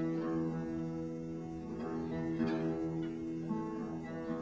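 Acoustic guitar strings plucked and left ringing in long, steady notes, with a couple of fresh plucks later on, as the player checks his tuning.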